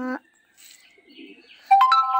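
A chime of three pure notes struck one after another, each higher than the last, ringing and overlapping near the end, just after a held voiced note fades out.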